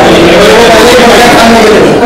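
Loud, continuous chatter of several voices talking over one another.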